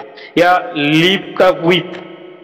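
A man's speaking voice, with a long drawn-out syllable in the middle.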